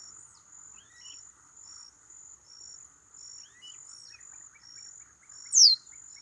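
Insects chirping in a steady high pulse that alternates between two pitches, with faint bird chirps under it; near the end a bird gives one loud, sharply falling whistle.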